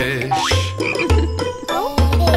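Cartoon frog sound effect: a couple of short rising croaks over the song's backing music, which carries on with its bass line.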